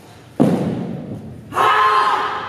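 A heavy thump about half a second in, as the wushu group lands a move in unison on the carpeted floor. About a second later comes a loud shout from several voices together.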